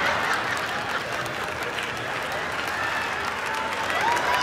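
Theatre audience applauding and laughing, a dense steady patter of many hands clapping with laughing voices mixed in.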